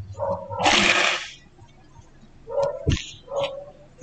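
A man sneezing once, a sharp noisy burst lasting under a second, followed a couple of seconds later by a few short vocal sounds and a soft thump.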